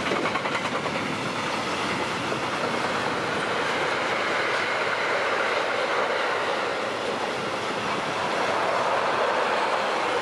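Loaded double-deck car-carrier freight wagons rolling past, a steady rush of steel wheels on rail with a rhythmic clatter of the wheelsets in the first second or so.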